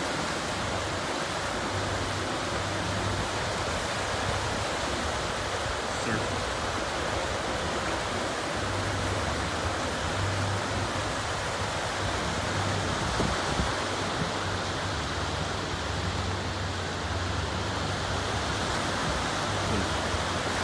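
Lake Erie waves breaking and washing onto the beach in a steady rush of surf, with a low rumble that comes and goes underneath.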